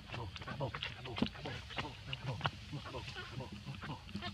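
Macaques giving short grunts and squeaky calls, a baby macaque among them calling out, with people's voices mixed in.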